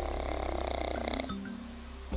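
A black pug snoring, one snore lasting about a second near the start, over background music with held notes.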